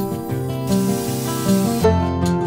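Table saw cutting a pallet-wood board, an even hiss under acoustic guitar background music; the saw noise cuts off shortly before the end while the music plays on.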